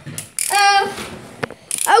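Ratcheting clicks of a Beyblade ripcord launcher being readied. A child makes a short held voiced sound about half a second in.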